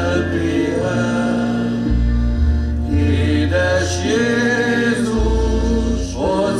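Live traditional village band music from accordions, wind instruments and double bass, with held melody notes over a low bass line that steps to a new note about once a second.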